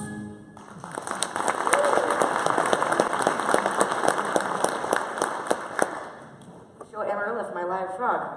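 Theatre audience applauding: many hands clapping together for about six seconds, dying away. A voice begins near the end.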